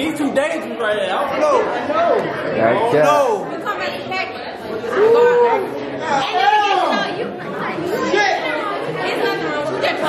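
Several people talking over each other, men's and women's voices chattering at once.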